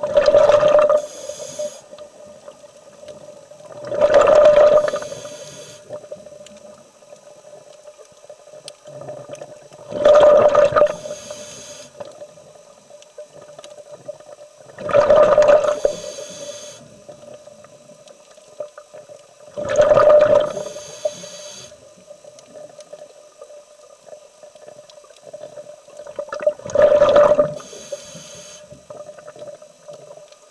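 A scuba diver breathing through a regulator underwater, six breaths about five seconds apart. Each breath is a loud rush followed by a softer, higher hiss.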